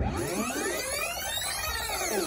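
Electronic synthesizer sweep effect: many tones glide up in pitch together, then fall back down near the end.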